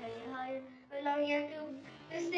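A child singing: two held notes, a short break between them just before a second in.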